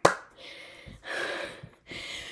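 A sharp click at the start, then a person's faint breathing between speech, a short breath about half a second in and a longer breath about a second in.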